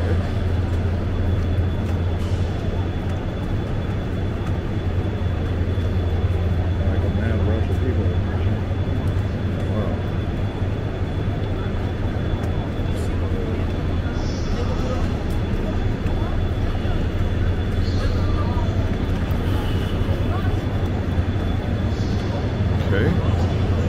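Steady low hum of a KTX high-speed train standing at the platform, with the voices and footsteps of passengers walking along it.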